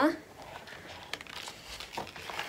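Faint rustling and crinkling as a new handbag is handled, its paper insert and paper tag rustling, with a few light clicks.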